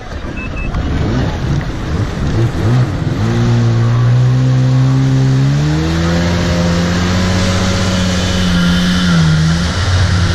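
Yamaha jet ski engine pulling away from a standstill: it revs up in two steps, about three seconds in and again a little past halfway, then holds a steady high pitch at speed with a brief dip near the end. A rushing noise of water and wind runs underneath.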